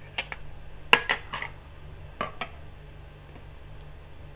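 Kitchen utensils and containers being handled: a handful of short sharp clinks and knocks, about seven in the first two and a half seconds, over a low steady hum.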